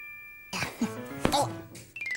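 A few held, bell-like notes of children's-show background music, then from about half a second in a burst of rough, cough-like vocal noises.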